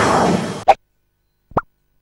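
Electronic dance-style theme music that cuts off suddenly with a sharp click about half a second in. Near the end there is one short plop.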